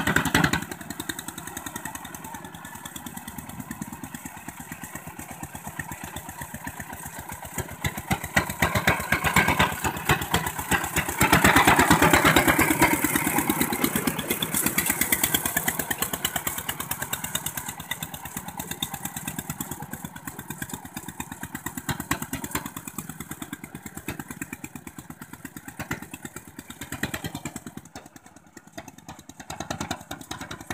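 Walk-behind two-wheel tractor's single-cylinder diesel engine running as it tills a flooded rice paddy, with a rapid, even beat of firing strokes. It is loudest from about 11 to 15 seconds in, when the machine is close, and grows fainter near the end as it works farther away.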